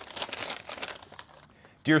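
Folded paper letter crinkling and crackling as it is opened out, dying away after about a second and a half.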